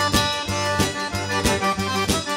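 Cajun band playing an instrumental passage: a diatonic Cajun button accordion carries the melody over fiddle, guitar, bass and drums, with a steady beat of about three drum hits a second.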